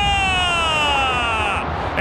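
A football TV commentator's long, drawn-out shout, held on one high pitch that slides slowly down for over a second and a half as a free kick is struck. Under it is the steady noise of a stadium crowd.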